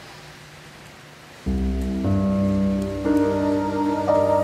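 Faint hiss, then about a second and a half in, soft background music enters suddenly with slow, held chords. Higher notes join at about two and three seconds, building a sustained, layered chord.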